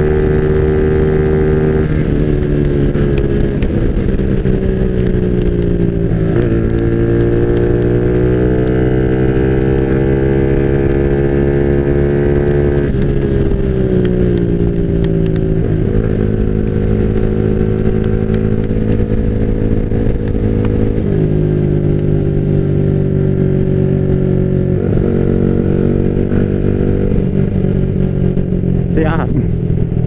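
Bored-up Yamaha Jupiter MX (177 cc, 62 mm piston) single-cylinder four-stroke engine running under way. Its pitch steps up and down several times, climbs steadily for several seconds, then falls sharply about halfway through.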